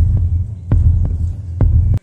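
Deep, throbbing bass sound effect with a sharp click about every second, laid over the scene; it cuts off abruptly at the end.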